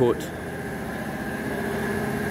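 Steady mechanical drone of a running machine, with a faint steady high tone in it.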